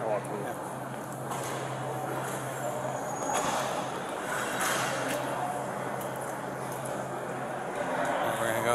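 Background noise of a large, echoing public lobby: indistinct distant voices over a steady low hum.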